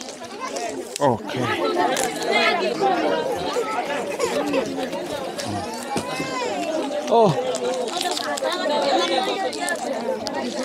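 A crowd of children and adults chattering at once, many voices overlapping with no single speaker standing out.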